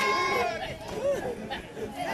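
A group of children's voices: a loud chorus of voices ends about half a second in, followed by quieter overlapping chatter.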